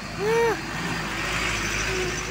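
A Mitsubishi truck loaded with sugarcane driving past close by, its diesel engine rumbling and its tyres hissing on the road, with motorbikes following. A short whoop-like call comes just after the start.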